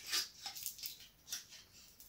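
Faint crinkling of a thin foil wrapper as a foil-wrapped Oreo chocolate egg is unwrapped by hand, in several short crackles.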